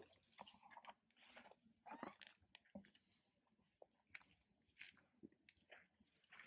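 Faint, irregular crunching clicks of a macaque monkey chewing food.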